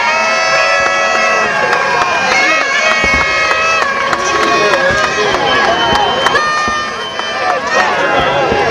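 A large outdoor crowd cheering and shouting, many voices overlapping at once. A few low booms, likely fireworks, come through about three seconds in and again around five seconds.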